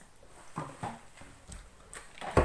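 Mouth sounds of someone chewing a bite of bagel: four or so short, wet clicks and smacks about half a second apart.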